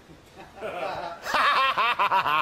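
Men laughing: faint chuckling about half a second in that builds into louder, rapid laughter.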